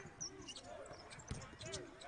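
Faint basketball dribbling on a hardwood court, a few scattered bounces, with faint voices of players on the court.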